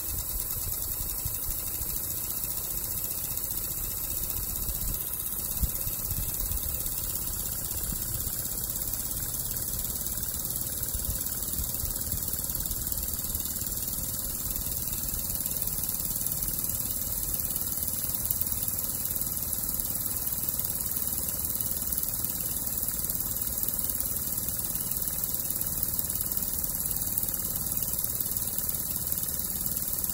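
Small single-acting oscillating model steam engine running steadily on compressed air at about three psi, giving an even, continuous hum.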